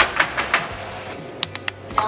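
A few light taps, then three sharp clicks in quick succession about one and a half seconds in.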